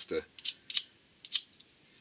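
About four light, sharp clicks spread over a second or so, from a vacuum tube and a snap-off blade craft knife being handled in the hands.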